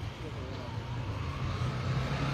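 A steady low engine hum that grows louder, with faint voices in the background.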